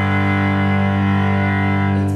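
Cello bowed in one long, low, sustained note, held steady.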